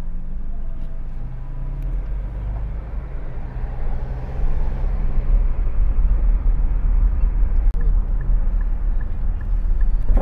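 Car driving through town, heard from inside: a steady low engine and road rumble that grows louder about halfway through. Near the end a turn signal ticks lightly, about two to three times a second.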